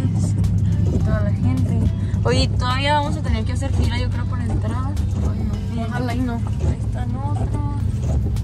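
Lamborghini engine droning low and steady inside the cabin as the car creeps along, under music with a wavering singing voice.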